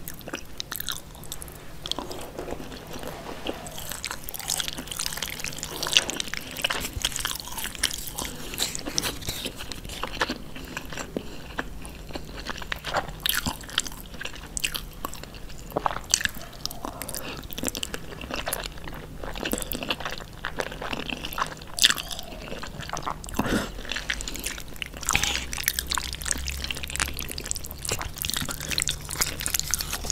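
Close-miked chewing of jajangmyeon noodles in black bean sauce: a dense, irregular run of wet mouth clicks and smacks that never lets up.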